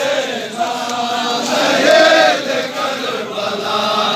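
A large crowd of men chanting together in unison, an Ashura mourning chant, with one phrase swelling louder about halfway through.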